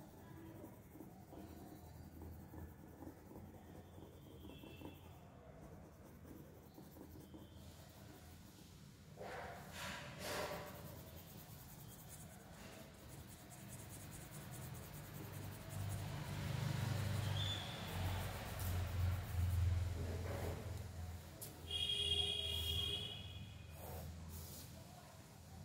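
Graphite pencil scratching on paper in steady shading strokes. A low rumble swells in the second half, and a short pitched sound comes near the end.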